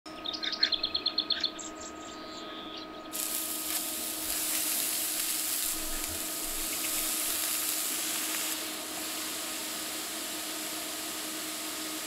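A quick run of high chirps in the first second and a half, then, about three seconds in, beef burger patties start sizzling on a hot griddle. The sizzle stays steady and eases slightly after about eight and a half seconds, over a faint steady hum.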